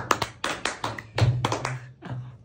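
One person clapping his hands quickly, about six or seven sharp claps a second, fast and uneven.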